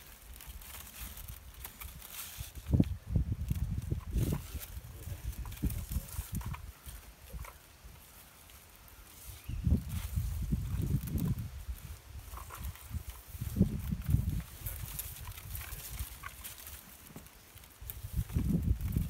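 Old bramble canes being pulled out from behind wall wires and dragged through their leaves: irregular rustling with scattered small cracks, over bursts of low rumbling.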